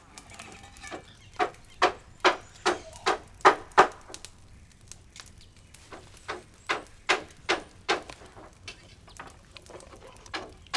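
A pestle pounding in a mortar, in steady strokes about two or three a second. There are two runs of strokes with a short pause between them.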